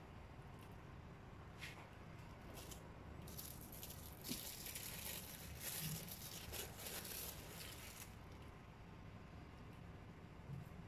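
Plastic film crinkling and rustling in a run of short bursts, starting about three seconds in and lasting about five seconds, as pastry strips are peeled off it and wrapped around a stuffed chicken breast.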